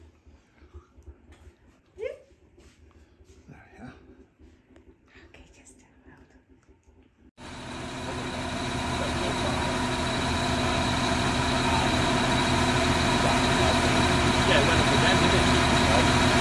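Faint room sound for the first half, then a tractor engine cuts in abruptly and runs steadily, growing slowly louder.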